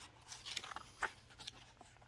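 Page of a hardcover picture book being turned by hand: a few faint, brief paper rustles and scrapes, the sharpest just after a second in.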